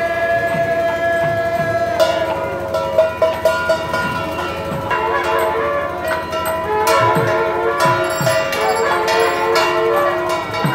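Processional music: a melody of long held notes that step from pitch to pitch over repeated drum strokes, with bells ringing.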